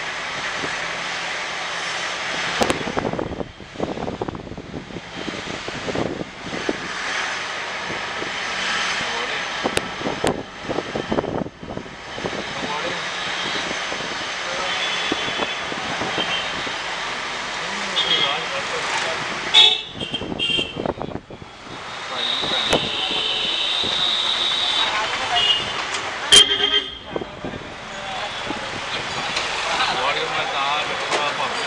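Busy market-street traffic: engines of passing scooters and cars with background voices, and vehicle horns tooting several times in the second half, one held for a few seconds.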